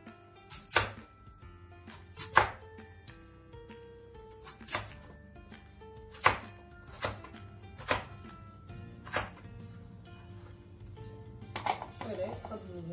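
Crinkle-cut potato cutter chopping down through potato onto a plastic cutting board: about eight sharp chops spaced a second or so apart, over background music.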